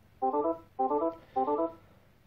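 Emerson DeltaV Operate operator-station alarm tone: three identical short electronic beeps, a little under two a second, sounding as the process value crosses its high-high limit and a new critical alarm comes in.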